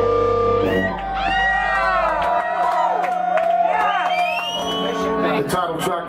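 A punk rock band's last chord (guitar, bass and drums) rings out and stops about a second in. Then the audience cheers, whoops and shouts, while a single guitar note holds on for a few seconds.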